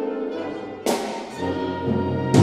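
Concert band playing a held chord, broken by a sharp percussion stroke a little under a second in, after which low bass notes come in.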